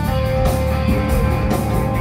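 Rock band playing live: electric guitar holding one long sustained note over bass and drums.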